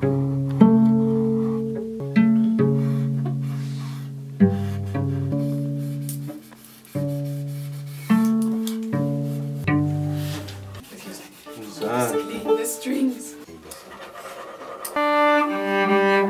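Cello played pizzicato: a slow run of plucked low notes, each starting sharply and dying away, often two or three sounding together. About eleven seconds in the plucking stops and gives way to softer, wavering string sounds, then a held bowed note near the end.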